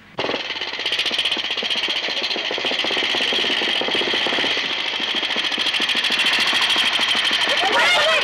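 Motorcycle engine running, a rapid, even stutter of firing pulses that starts suddenly and grows gradually louder as it approaches.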